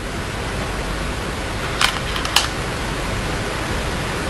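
Steady hiss of background noise, with two light clicks of Go stones against each other in the stone bowl about two seconds in, roughly half a second apart.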